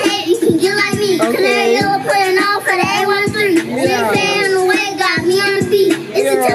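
A hip hop track playing, with sung vocals in held, gliding notes over a steady beat.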